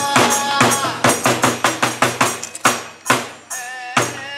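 Bitchū kagura accompaniment: a run of quick drum and jingling metal percussion strikes, about five a second and fading away, with a held wavering tone coming in near the end.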